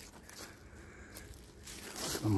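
Faint footsteps on dry fallen leaves: a few soft crunches and rustles.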